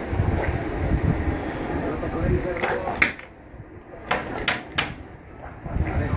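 Young children's voices, not forming clear words, with a run of sharp clicks or knocks in the middle: about three close together, then four more a second later.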